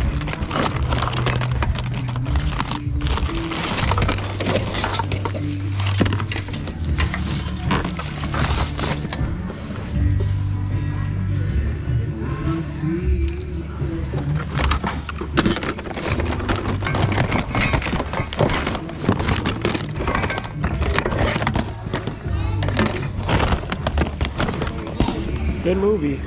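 Background music with a steady bass line that changes notes every second or two. Over it come the clatter and rustle of plastic DVD cases and other junk being shuffled around in a bin.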